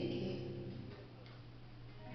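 Acoustic guitar chord plucked at the start, ringing and fading away over about a second, leaving a pause with only a low steady hum.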